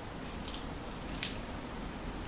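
A few short, faint crackles from a frozen freezer pop being bitten and handled in its plastic sleeve.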